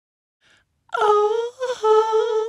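A woman's voice singing a long, wavering held note that starts about a second in, breaks off briefly, and goes on into a second held note.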